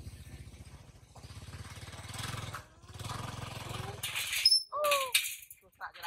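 Small motor scooter engine running with a fast, even low pulse, swelling for a couple of seconds and then falling away about three-quarters of the way in. A short high squeal sliding down in pitch follows soon after.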